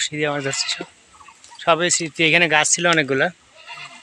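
Goats bleating: a quavering call at the start, then three more in quick succession about two seconds in.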